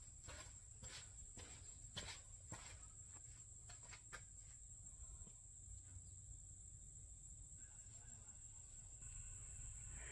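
Near silence: faint room tone with a steady, high-pitched whine and a few light taps in the first four seconds, footsteps walking up to the aluminum boat hull.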